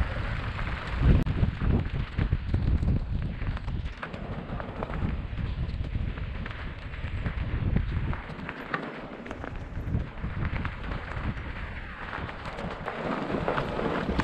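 Mountain bike riding over a rocky dirt trail, heard from a helmet-mounted camera: wind rumbling on the microphone, tyres crunching over loose stones, and the bike rattling with scattered knocks. The rumble eases a little past the middle.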